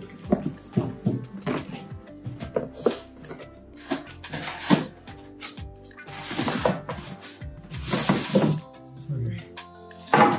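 Background music over the scraping and rustling of a cardboard box and foam packaging being handled, with sharp scrapes and crinkles throughout.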